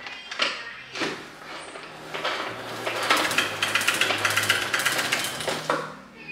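O-Cedar spin mop bucket being pedalled to spin-dry the wet mop head in its wringer basket: a few knocks as the mop is seated, then a fast whirring, clicking spin that starts about two seconds in and stops just before the end.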